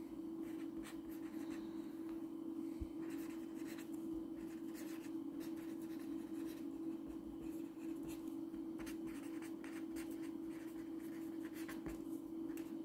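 Pen writing on paper on a clipboard: short scratching strokes as words are written out, over a steady low hum.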